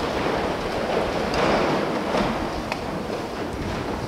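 A rushing, rustling noise, swelling in the middle, with a few faint clicks.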